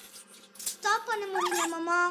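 A child's voice drawn out in one long sing-song sound, starting about a second in, its pitch sliding slowly downward.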